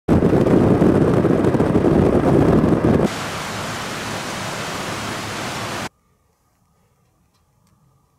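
Wind buffeting the microphone, a loud, heavy rush that cuts at about three seconds to the even rushing of white water over rocks in a stream. About six seconds in it drops to near silence.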